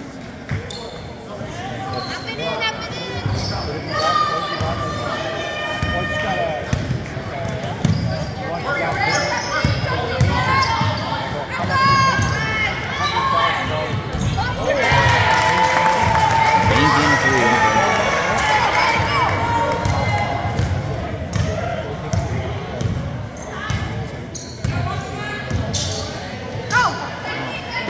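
Basketball bouncing on a hardwood gym floor during play, with players and spectators calling out in the echoing hall. The voices grow louder for several seconds in the middle.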